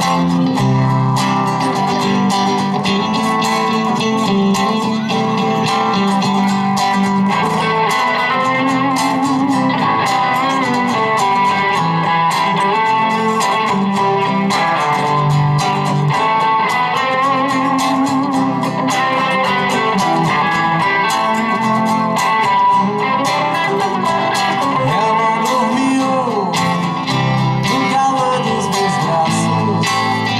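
An acoustic guitar and an electric guitar playing together live, a steady instrumental passage at an even, loud level.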